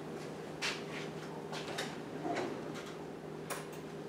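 Faint, scattered clicks and light knocks, about half a dozen, over a steady low hum.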